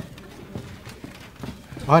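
A run of light knocks, about three a second, over a low background hum, with a man's voice starting at the very end.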